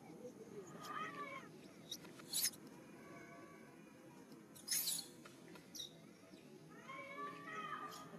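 Young pig-tailed macaques squealing in distress as they are grabbed and mouthed: whining calls that fall in pitch about a second in and again near the end, with two short, harsh screams in between, about two and a half seconds apart.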